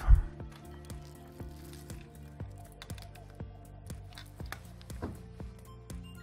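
Background music with steady held tones. A single low thump comes just after the start, followed by a few soft clicks from handling a USB cable and plug as it is pushed into an OTG adapter.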